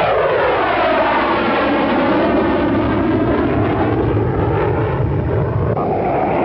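Low-flying military aircraft passing by, its engine sound sweeping down in pitch as it goes past, then rising again; the sound shifts just before the end.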